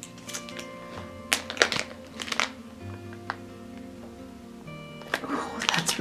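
Soft background music of held chords that change twice, with a few sharp crinkles of clear plastic packaging as a wax melt is handled.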